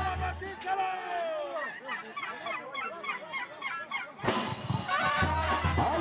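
Live band music with crowd voices. The bass line drops out about half a second in, leaving higher melody and voices, then the full band comes back in suddenly a little after four seconds.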